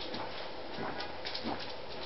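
Golden retriever puppy playfully mouthing and nuzzling a kitten on a bedsheet: a few soft, short rustles and mouth sounds over a steady background hiss.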